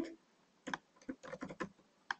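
Computer keyboard keystrokes: a quick run of about six key presses, starting about half a second in, as a word is typed into a code editor.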